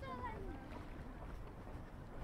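Low, uneven wind rumble on the microphone, with a person's voice briefly at the start.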